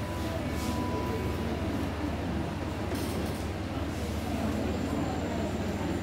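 Steady low hum and rumble of a hall's room noise, with faint voices in the background.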